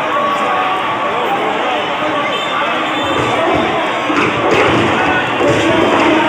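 Large crowd of many people talking and cheering together, growing a little louder in the second half. There are a few dull thumps around the middle.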